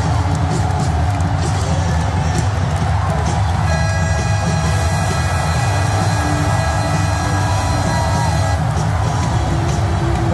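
Loud arena music playing over a cheering crowd. A steady held tone at several pitches at once sounds from about four seconds in until shortly before the end.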